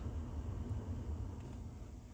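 Car climate-control blower fan winding down after being switched off, its steady air hiss fading gradually.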